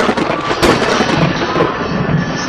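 Loud, sharp crackling bursts over music, with one crack about half a second in.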